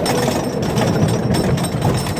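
Roller coaster car rumbling and clattering along a wooden coaster track, a continuous dense rattle with a thin steady high tone over it.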